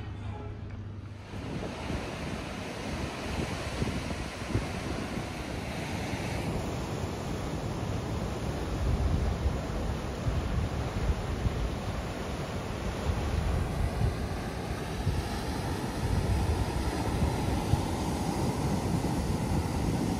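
Ocean surf breaking and washing onto a rocky shore, a steady rush that swells and falls, with wind buffeting the microphone in low rumbles. It starts about a second in.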